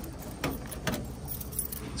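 A bunch of keys jingling at a van's door lock, with a few short, light metallic clicks.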